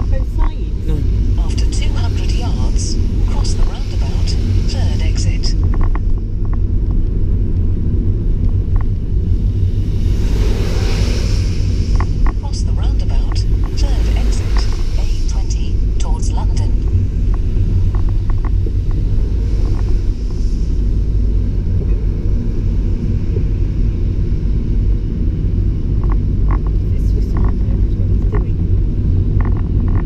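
Road noise heard inside a moving car on a wet road: a steady low rumble of engine and tyres, with scattered light ticks in the first few seconds and a swell of hissing spray about ten to twelve seconds in.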